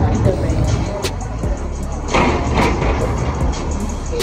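Street background noise: a steady low rumble with a few sharp clicks, and a brief swell of noise about two seconds in.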